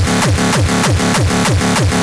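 Gabber/frenchcore music: a heavily distorted kick drum hitting about three times a second, each hit dropping in pitch, with a droning bass tail filling the gaps between hits.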